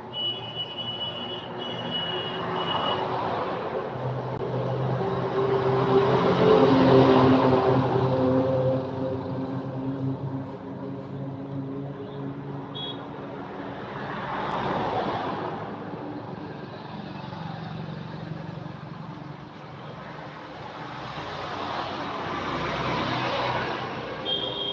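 Road traffic passing close by: vehicle engines rise and fade in three waves, loudest about six to eight seconds in. A high horn tone sounds over the first three seconds.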